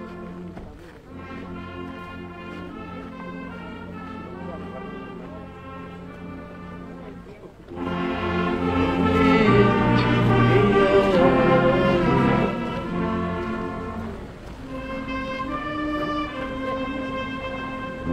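Military brass band playing slow music with long held notes. It is moderate at first, swells louder for a few seconds about halfway through, then eases back.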